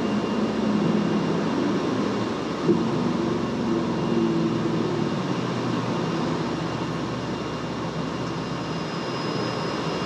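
Flight-deck noise of a Boeing 737-300 freighter taking off and climbing out: a steady rush of air and CFM56 jet engine noise, with a single sharp thump a little under three seconds in.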